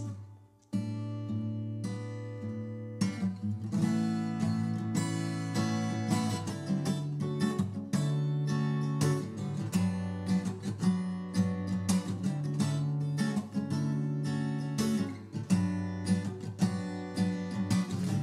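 Unamplified old Yamaha steel-string acoustic guitar playing a chord intro, the strings picked and strummed in a steady rhythm. A brief gap just after the start, then the chords run on continuously.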